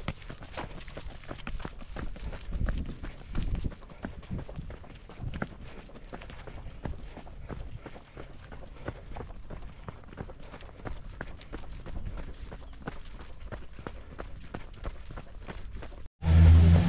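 A trail runner's footsteps on a bare rock trail: quick, even footfalls that keep up through the whole stretch.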